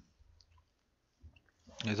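A near-silent pause broken by a few faint, short clicks, then a man starts speaking near the end.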